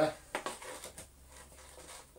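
Vacuum cleaner hose handle and metal extension wand being handled and pushed together: a sharp click about a third of a second in and a lighter one about a second in, with faint rubbing in between.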